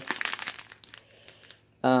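Clear plastic bags of diamond painting drills crinkling as they are handled, fading out about a second in.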